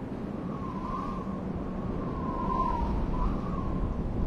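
Wind noise swelling steadily louder, with a faint whistle that wavers up and down a few times over it.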